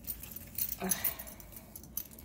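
Handbags being handled: a rustle about half a second in as a woven bag is lifted, and a light click near the end.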